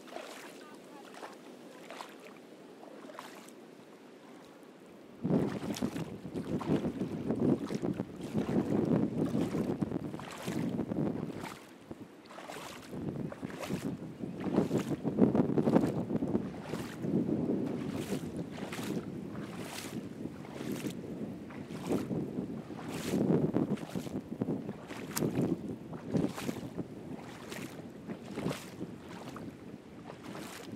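Footsteps wading and splashing through shallow water over a reef flat, about one and a half steps a second. Wind buffets the microphone from about five seconds in.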